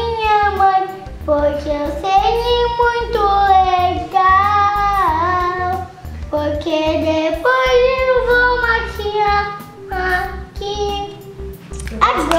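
A child's voice singing a melody in held notes and phrases over music with a steady low accompaniment.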